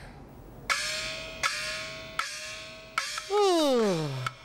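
Small opera gong of the puppet-theatre band struck four times at an even pace, about one stroke every three quarters of a second, each stroke ringing on with a slight rise in pitch right after the hit. Near the end a loud voice gives a long sigh that falls steadily in pitch.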